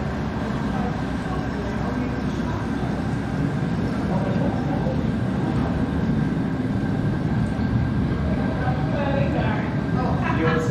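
Steady low rumble of room ambience with a faint high steady tone running through it; faint voices come in near the end.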